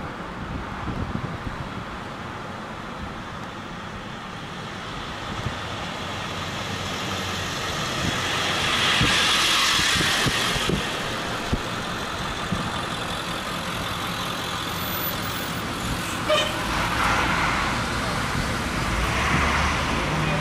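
Road vehicle noise: a steady rush that swells about halfway through and again near the end.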